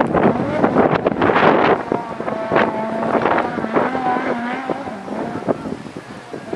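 Off-road race buggy's engine running hard as it pulls away over sand. The engine surges roughly at first, then holds a steady pitch for a few seconds before fading, with wind on the microphone.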